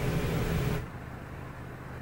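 Open-microphone background noise during a live hand-off: a steady hiss that drops away just under a second in, leaving a faint low hum.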